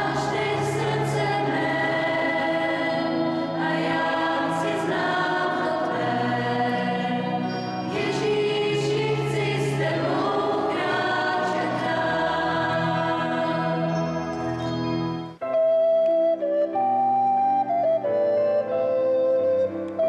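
Mixed choir of women and children singing a hymn-like song with keyboard accompaniment. About fifteen seconds in, the singing stops and recorders take up a stepwise melody over the digital piano.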